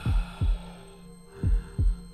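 Heartbeat sound effect on a film soundtrack: two double thumps, lub-dub, about a second and a half apart, over a low steady hum.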